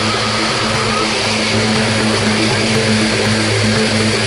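Propeller-driven jump plane's engine and propeller heard from inside the cabin in flight: a steady, loud drone with a low hum under a wash of noise.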